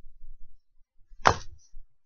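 A single sharp click with a short rasping tail about a second in, from a cigarette lighter being handled while a cigarette is lit.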